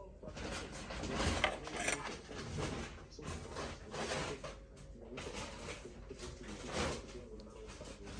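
Irregular clicks and knocks of a metal fork against a ceramic soup bowl and plate.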